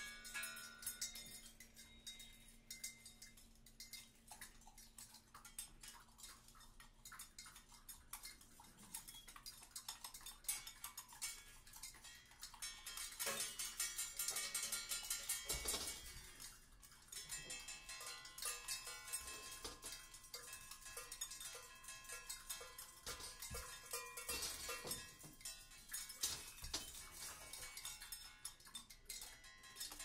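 Quiet free-improvised percussion duo: scattered taps, clicks and rattles on small percussion with thin ringing tones. The playing thickens into a denser, louder flurry about halfway through, then thins out again.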